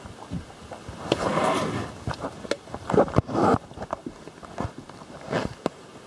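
Handling noise from a handheld camera being moved about: irregular rustling, with clothing brushing the microphone and scattered clicks and knocks.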